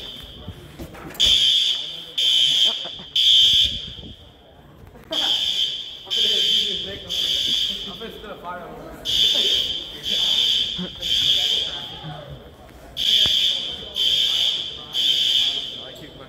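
School fire alarm horns sounding the temporal-3 evacuation signal: groups of three short, shrill blasts with a pause between, repeated four times. Here they are a false alarm, set off when a burnt cafeteria oven tripped a heat detector.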